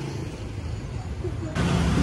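Road traffic noise: a steady low rumble of vehicles on the street, stepping up abruptly in loudness near the end.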